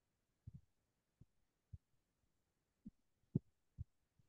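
Near silence broken by about six short, faint low thumps at uneven intervals, the clearest a little past three seconds in.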